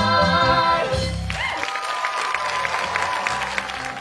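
A full cast of singers with accompaniment holds the final chord of a musical theatre number, which cuts off about a second in. Applause follows, with a faint held tone under it.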